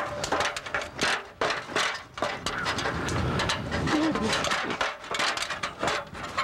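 Wooden ladder knocking and creaking under a person's feet and hands as he climbs it, with repeated short knocks and clothing rustle.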